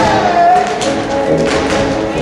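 Music for a Mexican folk dance plays, carrying a melody line. About a second in, the sharp taps of dancers' shoes striking the floor in zapateado footwork come in over it.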